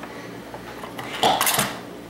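Trouble's Pop-O-Matic die popper pressed: the die clatters inside the clear plastic dome in one short rattle, about a second in.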